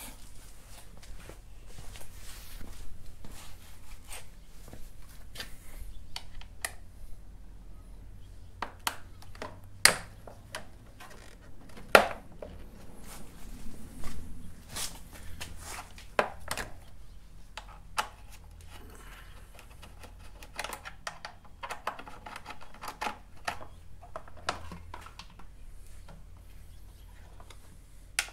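Scattered light clicks and knocks of hand tools and the plastic air box being worked loose from a scooter's engine compartment, with two sharper knocks about ten and twelve seconds in.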